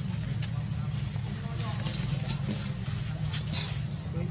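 Indistinct background voices over a steady low rumble, with a few faint clicks.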